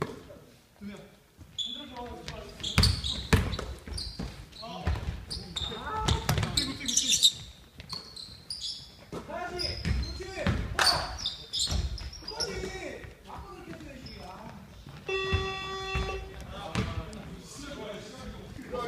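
A basketball bouncing on a wooden gym floor during play, with players' voices and shouts ringing around a large hall. A steady tone sounds for about a second near the end.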